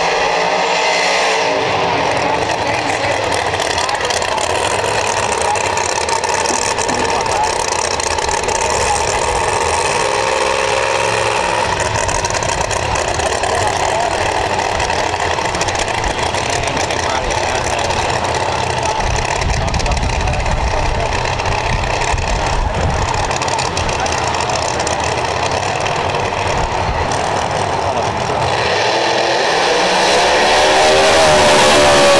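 Drag race car's big V8 engine running loud through a tyre-smoking burnout, then rumbling at low revs as the Chevy II Nova rolls back up to the line to stage.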